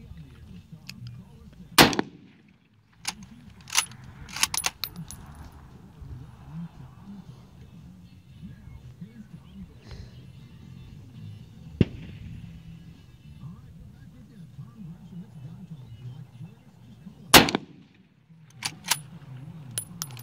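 Two shots from a Mosin Nagant 91/30 bolt-action rifle firing 7.62x54R, one about two seconds in and one near the end, each very loud and sharp. A few seconds after each shot come short metallic clacks of the bolt being worked, over a steady low rumble.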